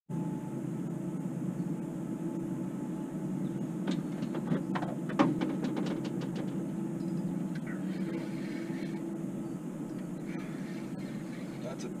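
Boat's outboard motor running with a steady low drone, and a quick run of sharp clicks from about four to six and a half seconds in.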